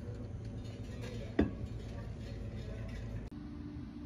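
Café room ambience: a steady low hum with faint background voices, and one sharp knock about a second and a half in. Just before the end the background changes abruptly to a different steady hum.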